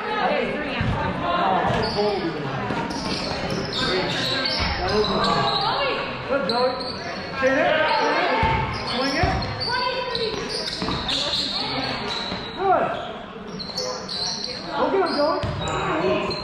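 Basketball dribbled on a hardwood gym floor, a scattering of low thuds, under the voices of players, coaches and spectators echoing in a large gym.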